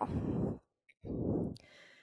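Two audible breaths from a woman into a close-worn headset microphone, each about half a second long, the second about a second in.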